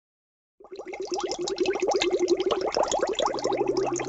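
Bubbling water sound effect: a fast run of short, rising bubble blips that starts about half a second in and keeps going steadily.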